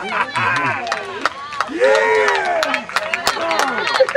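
Spectators and young players cheering and shouting over a game-ending win, several excited voices at once, the loudest shout about two seconds in, with scattered sharp claps.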